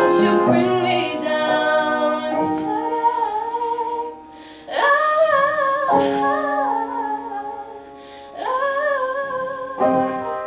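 A woman singing solo, holding long notes with a wide vibrato over sustained piano chords. Her voice drops out briefly about four seconds in and again about eight seconds in, leaving the piano sounding.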